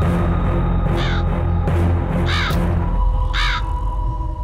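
A crow cawing three times, about a second apart, over loud background music with a heavy low drone.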